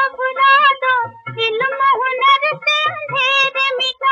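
Hindi film song: a child singing in short phrases over musical accompaniment.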